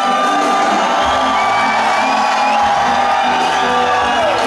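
Reggae band playing live through a venue PA, with one long held note running through most of the passage.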